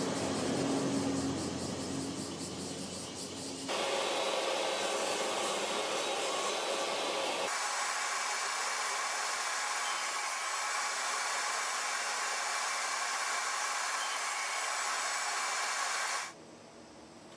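Steady noise of a running motor or blower, which changes tone abruptly about four seconds in and again midway, then stops sharply at the end.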